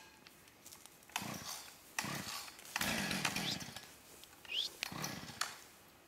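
Petrol chainsaw being pull-started: four tugs on the starter cord, each a short burst of cranking noise, without the engine running on.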